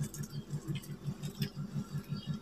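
Faint light patter and small clicks of a hand moving in water in a large metal bowl, over a low pulsing hum.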